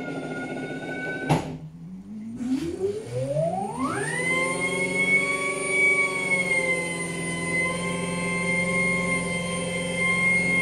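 Electric motor dyno, a VESC-driven drive motor loaded by a second motor in regen. A high electric whine with many overtones breaks off at a sharp click about a second in, then climbs steeply in pitch over about two seconds as the motor spins up under load, and holds nearly steady at full speed with roughly 15 kW going in.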